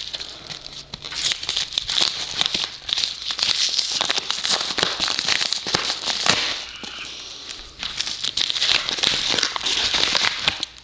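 Paper mailing envelope crinkling and crackling as it is handled and opened close up. The crackling goes on nearly without a break and eases for a second or so after the middle.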